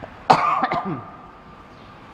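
A man coughing into a tissue held to his mouth, close to a microphone: one short, loud fit about a third of a second in, over in well under a second.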